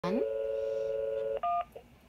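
Cordless phone handset on speaker playing a steady dial tone, which cuts off about one and a half seconds in as a single short keypad beep sounds: the first digit being dialed.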